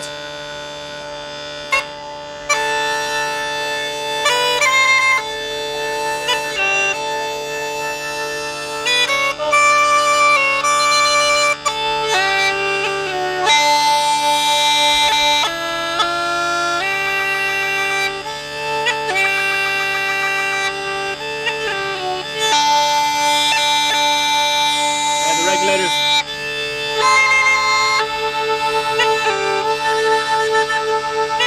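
Irish uilleann pipes playing a tune on the chanter over three steady drones tuned to D an octave apart. The drones sound alone for the first couple of seconds before the melody starts.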